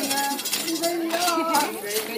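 Women chanting an Adi Ponung dance song together, with rhythmic metallic jingling in time with the dance steps.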